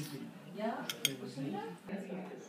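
Cutlery clinking on a china dinner plate, with two sharp clinks about a second in, over voices in the background.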